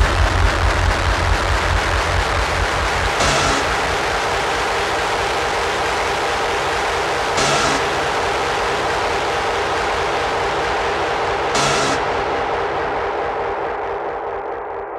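Outro of an early hardcore (gabber) track with the kick drum gone. A dense, rumbling distorted drone holds, with a brief hissing swell about every four seconds, and slowly fades out toward the end.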